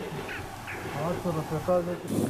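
Faint voices talking in the background, quieter than the narration on either side, over a low steady hum of field sound.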